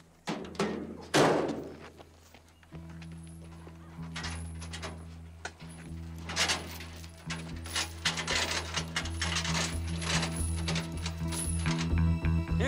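A few heavy thuds near the start, the loudest about a second in, then film-score music with a steady low bass comes in about three seconds in. Metal clinks and rattles of a steel tow chain being handled and laid on the road run over the music.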